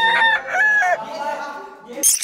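High, drawn-out crowing calls like a rooster's, two or three in quick succession with short pitch bends, fading away in the second half.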